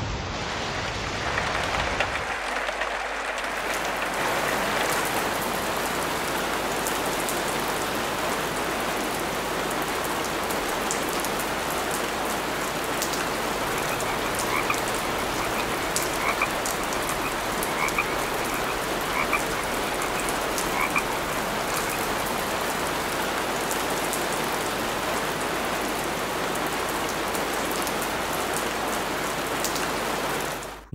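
Recorded rain ambience from a sleep-sounds app, a steady hiss of rain that grows a little louder in the first two seconds. Frog croaks are mixed over it in a short run of repeated calls near the middle.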